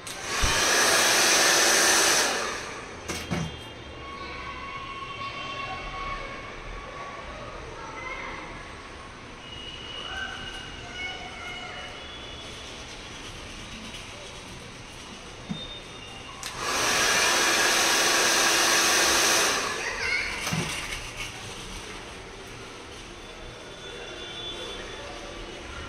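Two long hissing sprays of a continuous-mist water spray bottle wetting the hair, the first about two seconds long near the start and the second about three seconds long later on, each starting and stopping sharply.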